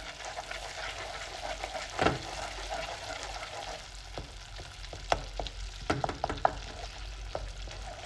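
Hot caramelised sugar sizzling and bubbling as chunks of butter melt into it, stirred with a wooden spoon. Now and then the spoon knocks against the pan, most sharply about two seconds in.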